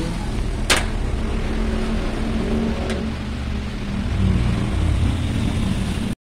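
Steady low rumble of a running motor vehicle engine, a little louder near the end, with a sharp click just under a second in and a fainter click about three seconds in.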